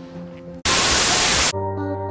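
Background music interrupted by a loud burst of static hiss lasting just under a second, used as an editing transition; after it, music resumes with a sustained chord.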